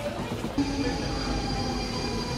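Rumble of a train, then from about half a second in a train's whine of several steady tones that fall slightly in pitch.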